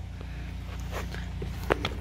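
A few faint, short clicks and taps as a new thermostat is pushed into its housing on a Porsche Cayenne 3.6 V6 engine, over a steady low hum.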